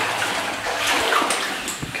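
Footsteps wading through shallow water, with irregular splashing and sloshing as feet move through it.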